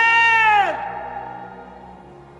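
A man's long shouted call, the drawn-out end of "Captain!", held on one pitch and then falling away about three-quarters of a second in. A faint held tone lingers after it.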